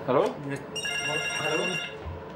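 Flip mobile phone sounding a steady, high-pitched electronic tone for about a second, starting a little under a second in.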